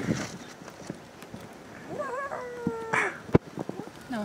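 A child's high, drawn-out call about two seconds in, wavering at first and then held, among scattered light knocks and clicks, with one sharp knock near the end.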